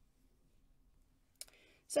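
Near silence with faint room hum, broken by a single short click about one and a half seconds in; a woman's voice begins at the very end.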